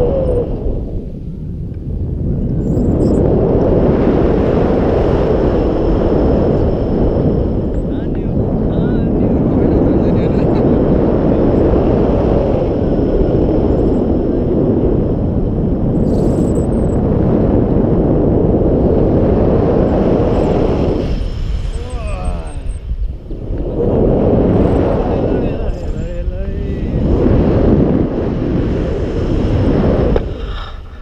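Airflow from tandem paraglider flight buffeting a pole-mounted action camera's microphone: loud, steady wind noise that eases briefly near the start and twice more in the last third.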